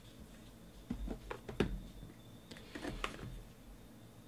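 Hands handling a small cardboard trading-card box as it is taken off a stack and opened: short clicks and taps in two clusters, one about a second in and one around three seconds in.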